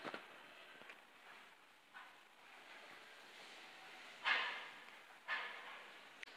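Dairy cows in a barn blowing out breath in a few short, breathy snorts, the loudest about four seconds in, with a brief knock at the start.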